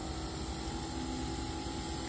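Steady background hum with a low rumble and a faint constant tone, unchanging throughout: room tone.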